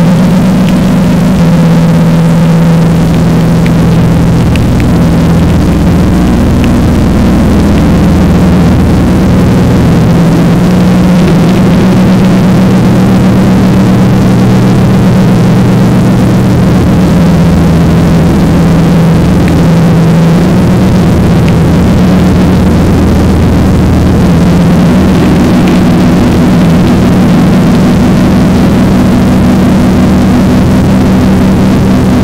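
Instrumental section of a sludge/doom metal song: heavily distorted electric guitars holding long, low notes that shift pitch every few seconds, loud and dense, with no vocals.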